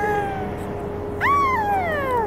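A high, drawn-out vocal call sliding down in pitch, ending about half a second in. About a second in, a second call rises briefly and then slides down for about a second. A steady whine from the aircraft or its ground equipment runs underneath.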